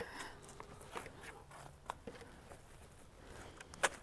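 Faint rustling with scattered light clicks and knocks as a plastic pot insert is handled and set down into a stone planter, with one sharper click near the end.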